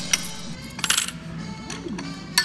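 Yen coins dropped onto a receipt on a bill tray, clinking: a few light clicks, then a louder clatter about a second in, over background music.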